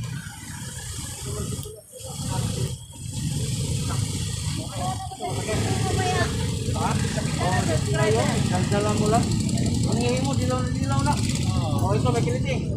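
Low engine rumble of road traffic, growing louder a couple of seconds in and then holding steady. People talk indistinctly over it.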